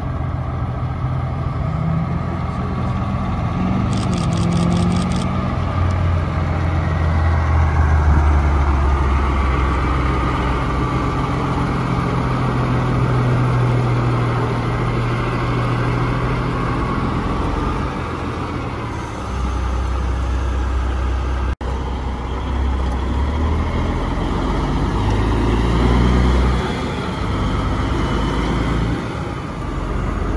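Semi-truck diesel engines running as the rigs pull past one after another, the deep engine note swelling and easing as each goes by. The sound drops out for an instant about two-thirds of the way through.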